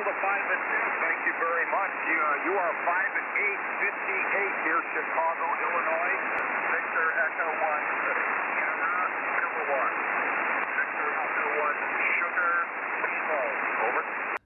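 HF amateur transceiver's receiver audio on the 20-metre band in upper sideband: steady band static hiss with weak, scattered voices of distant stations, heard through the radio's narrow sideband passband.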